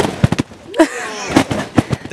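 A handful of sharp, irregular thumps and knocks, about five in two seconds, with a brief vocal sound about a second in.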